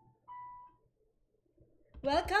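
The last note of a piano tune, struck about a quarter second in and fading out within about half a second, followed by near silence.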